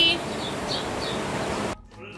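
Steady, even background hiss of outdoor ambience, with the tail of a woman's voice at the start and a few faint short high chirps. It cuts off abruptly near the end.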